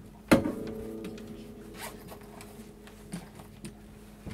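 Acoustic guitar bumped while being set down: a sharp knock, then its open strings ringing and fading over about two seconds. A few small clicks and rustles of handling follow.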